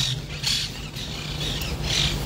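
Public-address system in a pause between a man's spoken phrases: a steady low hum, with short soft hissy noises every half second or so.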